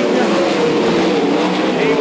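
A pack of winged sprint cars' V8 engines running at racing speed through a dirt-track turn, their overlapping engine notes wavering in pitch.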